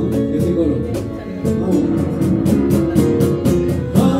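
A small live acoustic band, with upright bass and violin, plays a passage between sung lines over a steady light beat.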